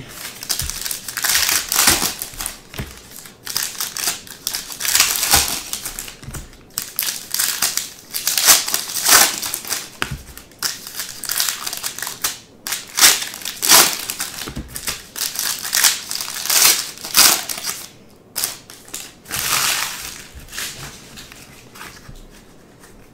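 Foil trading-card pack wrappers crinkling and tearing open in the hands, in a run of irregular rustling surges.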